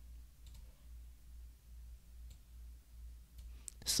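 A few faint computer mouse clicks, spaced out, over a low steady hum.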